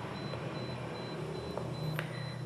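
Room tone in a pause between spoken sentences: a steady low hum and hiss with a faint high-pitched whine, and one soft click near the end.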